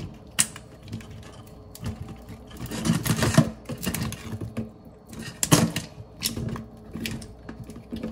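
Dungeness crab leg shells cracking and snapping as the sharp leg tips are broken off by hand: a run of irregular sharp cracks and clicks.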